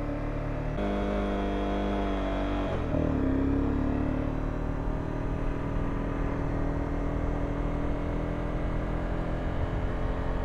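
Honda CBR250 sport-bike engine under way, heard through a helmet microphone, with road and wind noise. The engine note changes about one second in and again around three seconds in as the bike pulls away, then runs steadily at cruising speed.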